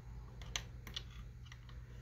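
A few scattered light clicks from a hand handling the Hogwarts train clock and working a control at its side, over a faint steady low hum.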